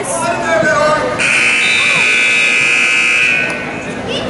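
A wrestling match-timer buzzer sounds about a second in: one steady electronic tone held for about two seconds, then cutting off. Voices of spectators and coaches are heard before it.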